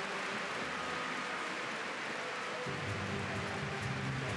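Steady stadium crowd noise, with a low melody coming in about two-thirds of the way through.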